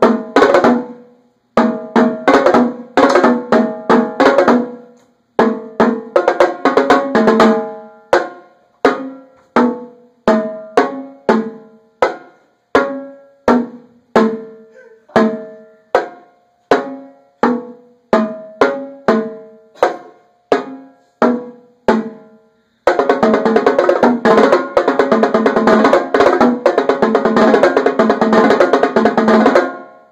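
A set of Yamaha marching tenor drums being played, their tuned drums ringing at different pitches. First come phrases of quick strokes, then a long stretch of single strokes about two a second moving from drum to drum. About three-quarters of the way through, the playing becomes a fast, unbroken passage across the drums that stops just before the end.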